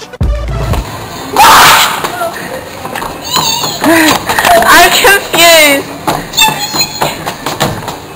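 Electronic music ends with a low thud in the first second. Then teenagers' voices shriek and squeal with excitement: a loud burst about a second and a half in, then high, wavering squeals.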